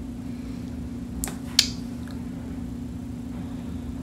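Glossed lips smacking twice about a second in, two sharp clicks in quick succession, the second louder, as lips coated in sticky gloss part. A steady low hum runs underneath.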